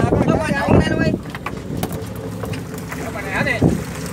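Fishing boat's engine running steadily at low pitch, with men's voices calling out over it in the first second and again briefly near the end.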